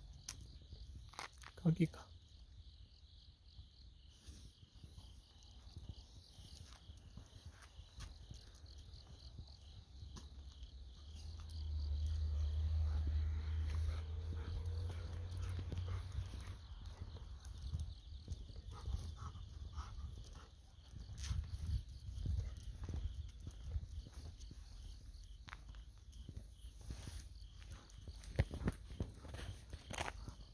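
Autumn insects trilling steadily, with scattered footsteps on a path; a low wind rumble on the microphone swells about twelve seconds in and fades over a few seconds.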